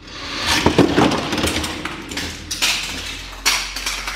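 Die-cast toy cars rolling down a four-lane plastic race track: a continuous rattling roll with sharp clacks, then several knocks as they run off the table and land on the floor.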